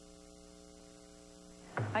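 Faint, steady electrical mains hum with a buzz of many even overtones, in the silent gap between two TV spots on an old off-air recording. A woman's voice starts just before the end.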